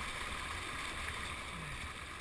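Choppy water lapping and sloshing right at a low, water-level camera, a steady wash of noise with a low rumble underneath.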